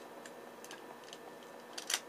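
Small hard-plastic clicks from a transforming action figure being handled: a few faint ticks, then a sharper click just before the end.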